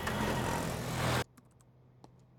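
Street traffic noise with an auto-rickshaw's engine running. It cuts off abruptly a little over a second in, leaving quiet room tone with a faint hum and a few small clicks.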